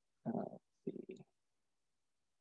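Speech only: a speaker's hesitant 'uh' followed by a second brief vocal sound.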